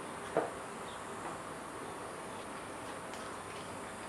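A steady background hum and hiss, with one brief soft knock about half a second in.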